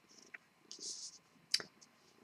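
Faint handling of tarot cards on a cloth: a few light clicks and a short brushing slide, with a sharper click about a second and a half in.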